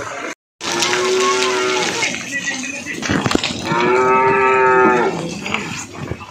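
Cattle mooing in a livestock shed: two long, steady-pitched moos, a second or so apart. A brief moment of total silence comes just before the first moo.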